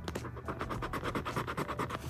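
Quick, repeated scraping strokes of a small scraper rubbing the latex coating off a paper lottery scratch-off ticket.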